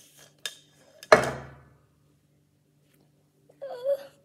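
A single sharp knock of a hard object about a second in, ringing out briefly, after a faint click. Near the end a short hummed groan.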